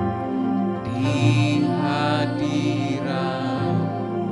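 Electronic keyboard playing slow, sustained worship chords, with a singer's voice joining over them from about a second in until shortly before the end.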